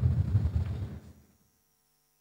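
A low rumbling noise with a fluttering, throbbing texture that fades out about a second and a half in, leaving near silence.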